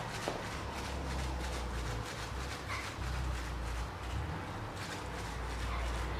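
A crumpled plastic bag being dabbed repeatedly onto wet acrylic paint on a canvas, a rhythmic crinkly patting about three times a second, texturing the black paint so that it dries wrinkly. A low steady rumble runs underneath.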